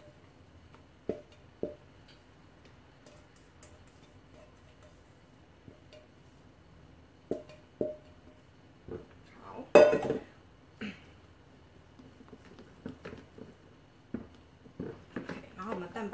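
Silicone spatula scraping and knocking against stainless steel mixing bowls as batter is scraped from one bowl into a larger one: a few scattered light knocks, with one louder clatter a little past the middle.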